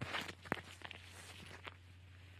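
A person shuffling and moving about on wooden floorboards and bedding: a few rustling footsteps with a sharp tap about half a second in, then quieter.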